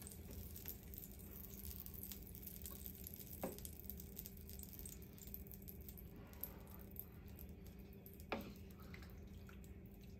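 Wooden spoon stirring broth in a metal pot: faint liquid sloshing with a few light knocks of the spoon against the pot, two of them a little louder, over a steady low hum.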